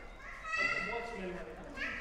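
High-pitched children's voices calling out and chattering in play, with a sharp rising call near the end.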